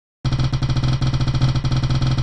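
Spin-the-wheel app's sound effect: rapid, evenly spaced ticking while the on-screen prize wheel spins, starting about a quarter second in.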